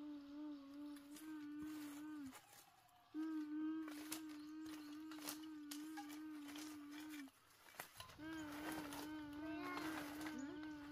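A ghostly humming voice holding one wavering note in long stretches, breaking off briefly about two seconds in and again about seven seconds in, over scattered light clicks.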